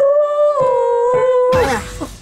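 A high voice holding a long groaning hum, 'kkeu-eum', that dips slightly in pitch partway through, then breaks off into a breathy, falling sound about a second and a half in.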